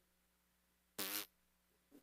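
A man makes one short buzzing mouth noise, a blown raspberry, about a second in; otherwise near silence.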